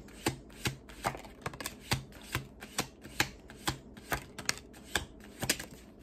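A tarot deck being shuffled by hand, cards slapping against each other in a steady run of short clicks, about two or three a second.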